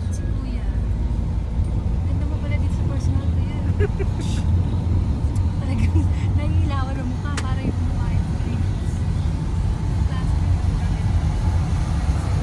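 Steady low rumble of engine and road noise inside a moving passenger van's cabin, with faint voices and occasional small clicks over it.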